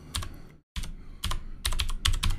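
Computer keyboard typing: a run of separate key clicks as a short command is typed at a prompt, broken by a brief dropout to dead silence about two-thirds of a second in.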